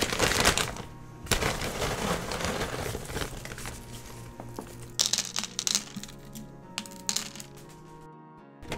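Clear plastic bag of charcoal filter media crinkling as hands dig into it, with lumps of charcoal rattling and cracking against each other. A few sharp clicks follow about five and seven seconds in as the lumps are dropped onto the rocks and mesh in a glass tank. Background music plays underneath.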